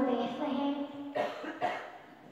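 A person's voice holding a long note, fading out about a second in, then someone coughing twice in quick succession.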